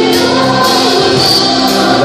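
Live gospel worship music: group singing holding long notes over instruments, with sharp percussion hits cutting in now and then.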